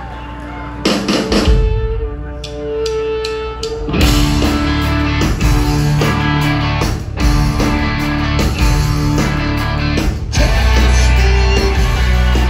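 Live rock band starting a song: electric guitar chords and held notes ring out alone for the first few seconds, then drums, bass and the other guitars come in together about four seconds in and the band plays on at full volume.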